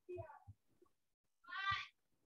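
A cat meowing twice: a short rising-and-falling meow at the start, then a higher, louder meow near the end.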